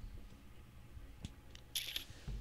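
A quiet room with a low hum, a faint click about a second in and a short hiss near the end.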